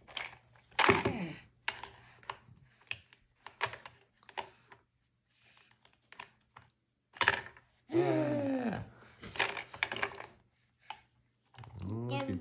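Hard plastic shape-sorter pieces clicking and knocking against a plastic shape-sorter ball and a table top as they are handled and dropped in, in a scattered run of separate clicks. A voice is heard briefly about two-thirds of the way through.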